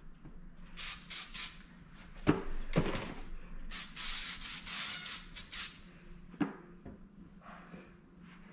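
Aerosol can of Angelus mink oil spraying: a few short hissing bursts about a second in, then a longer pulsing spray of about two seconds, with a few knocks from handling the can and shoe between.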